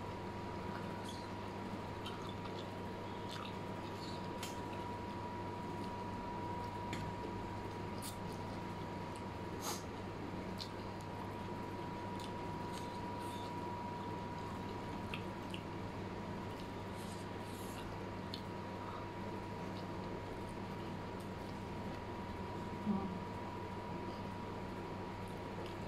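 Close-miked eating sounds of a person chewing fried instant noodles with squid and prawns: soft wet mouth clicks and small chopstick taps scattered through, with one louder knock near the end. A steady low hum and a faint steady high tone sit underneath throughout.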